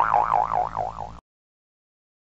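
Cartoon "boing" sound effect: a springy, wobbling pitch that swings up and down about five times a second, then cuts off suddenly a little over a second in.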